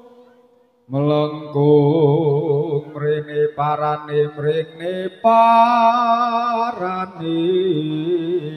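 Chanting, with long held notes whose pitch wavers, as accompaniment to a jaran kepang dance. It breaks off in a brief near-silent pause, then comes back in about a second in.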